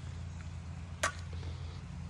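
A single sharp click about a second in, over a faint, steady low hum.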